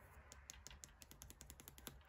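Tarot deck being shuffled by hand: a quick, faint run of clicks as the cards slip and tap against each other.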